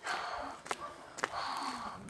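A boy breathing close to the phone's microphone: two audible breaths about a second and a half apart, with a few soft clicks between them.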